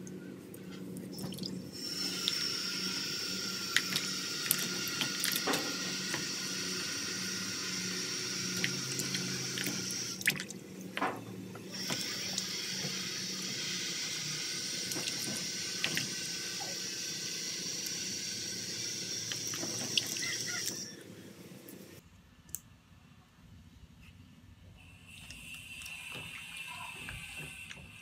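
Water running steadily from a tap, stopping briefly about ten seconds in, then running again until a little past twenty seconds. Scattered sharp clicks come from a knife cutting aloe vera leaves over a basin of water.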